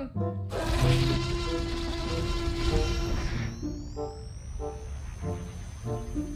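A dinosaur roar sound effect for a CGI Tyrannosaurus rex lasts about three seconds over background music. Then a laser-gun sound effect starts: a high whine that rises for about a second and holds steady.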